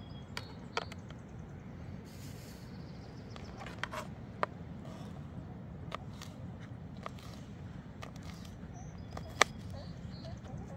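Kitchen knife chopping green bell pepper on a plastic cutting board: about eight sharp, irregularly spaced knocks of the blade on the board, the loudest near the end, over a steady low rumble.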